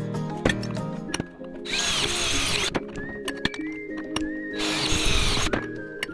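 Background music with melodic tones, over which a power tool runs in two bursts of about a second each, near two seconds in and near five seconds in.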